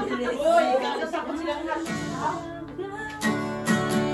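Women's voices and laughter, then an acoustic guitar starts being strummed about halfway through, its chords ringing on.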